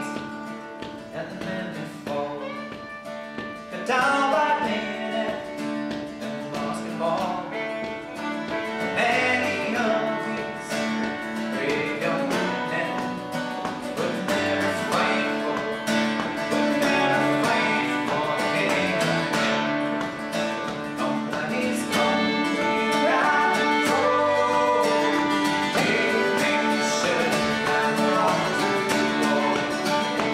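Irish folk band playing an instrumental break in a slow song: fiddle carrying the melody over a strummed acoustic guitar and Irish bouzouki.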